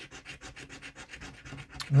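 A coin scratching the scratch-off coating from a paper scratchcard in quick, repeated back-and-forth strokes.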